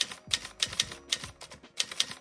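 Typewriter key-strike sound effect: a quick, slightly uneven run of about a dozen sharp clicks, one for each letter of the title text being typed on.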